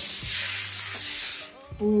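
Protective plastic film being peeled off a clear plastic picture-frame sheet: a loud, steady hissing rip that stops abruptly about one and a half seconds in.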